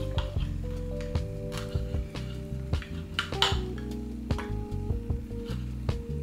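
Background music with steady held notes, over irregular sharp clicks of a knife against a plate as it cuts through a lettuce wrap.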